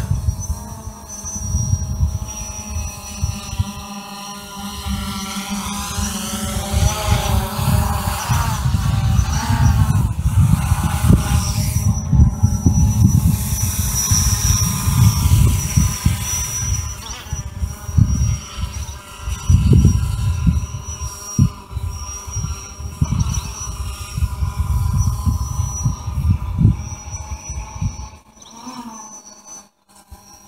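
DJI Phantom 4 quadcopter flying nearby: a steady high propeller whine over a stack of lower motor tones that bend up and down as the motors change speed, about a third of the way in. Wind buffets the microphone with a gusty low rumble, and the sound drops away near the end.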